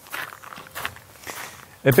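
Footsteps crunching on gravel: a few slow, unhurried steps.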